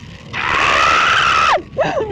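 A man screaming in dismay as heavy rain hits him on a motorcycle: one long, high-pitched yell about a third of a second in, lasting about a second and dropping in pitch as it cuts off, then a short vocal outburst near the end.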